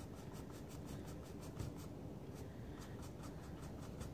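Stiff paintbrush lightly scrubbing acrylic paint onto the painting surface in the dry-brush technique: a faint quick run of short rubbing strokes, several a second.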